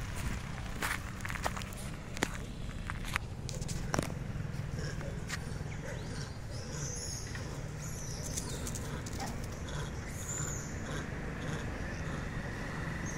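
Outdoor field recording: footsteps crunching through dry leaves and grass in the first few seconds, over a steady low rumble. Faint high chirps come in midway, and a car begins to approach near the end.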